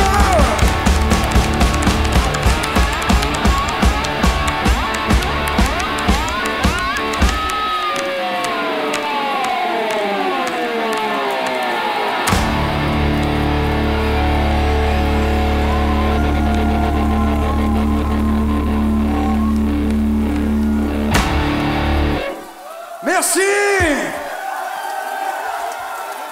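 Live blues-rock played on electric guitar and drums, ending a song: a driving drum beat, then guitar notes sliding down in pitch, then a long held low chord that stops suddenly about 21 seconds in.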